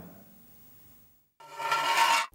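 Near silence for about a second. Then, about 1.4 s in, a short musical sting of several held synthesized tones starts, swelling in loudness and running on just past the end: a transition sound effect of the kind that introduces the next zodiac sign.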